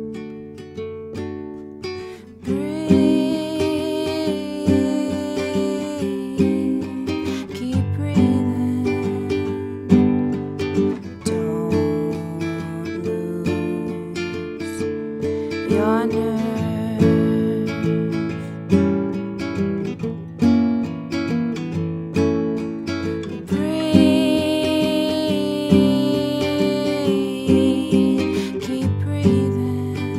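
Nylon-string acoustic guitar played with steadily plucked notes and chords. A woman sings long held notes over it from a couple of seconds in to about ten seconds, and again near the end.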